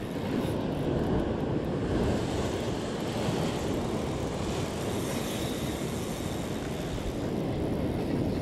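Ocean surf breaking and washing over breakwall rocks: a steady rushing roar.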